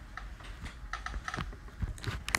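Light, irregular clicks and taps of a stylus on a tablet as lines are drawn.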